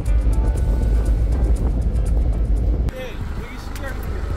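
Low rumble of a pickup truck driving on a rough dirt road, heard from inside the cab. About three seconds in it cuts off suddenly to the quieter, steady running of the truck's engine at idle.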